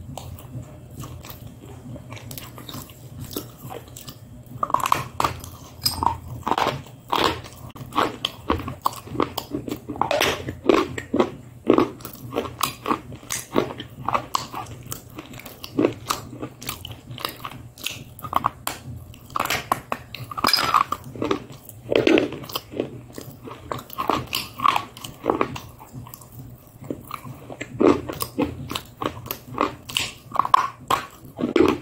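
Close-miked eating: chewing and mouth sounds made up of many short, sharp clicks, sparse at first and coming thick and fast from about four seconds in.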